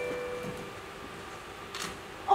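The last notes of a marimba-style phone ringtone ringing out and fading over the first half-second, then a quiet hall with a faint click near the end.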